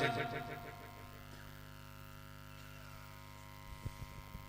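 The chanted salam dies away through the sound system's echo within the first second, leaving the steady electrical hum of the PA system. A few faint thumps come near the end.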